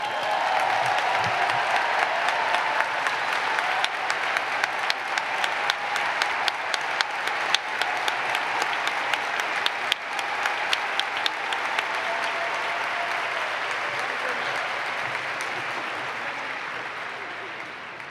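A large audience applauding, a dense spatter of many hands clapping, with crowd voices mixed in. The applause slowly fades over the last few seconds.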